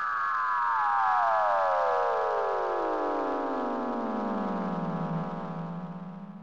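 A synthesized downward sweep sound effect: a layered, many-pitched tone gliding steadily down for about five seconds, then holding low and fading out near the end.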